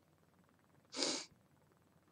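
A single short, breathy rush of air from a woman's nose or mouth, about a second in, with no voice in it. It sounds like a quick sniff or exhale, set in near silence.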